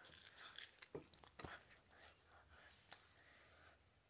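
Faint chewing and mouth noises of a child eating, with a few small sharp clicks scattered through.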